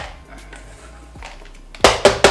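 Kitchenware handled on a countertop while dough is scraped from a metal bowl into a plastic container: a light click at the start, a few faint taps, then a loud sharp clack near the end.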